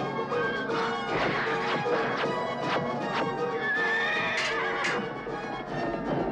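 Cartoon battle music with a horse sound effect: a horse neighing and hoofbeats over the score.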